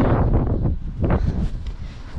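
Wind buffeting the microphone: a loud, uneven low rush in gusts that eases slightly near the end.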